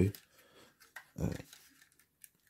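A man's hesitant 'uh' between quiet pauses, with a faint click about a second in.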